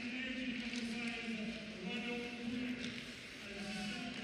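Arena crowd chanting in unison, long held sung notes rising and falling in short phrases.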